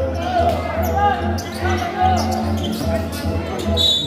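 Basketball game sounds: a ball bouncing on the court, with short sharp impacts among chatter and shouts from the crowd. Music plays in the background.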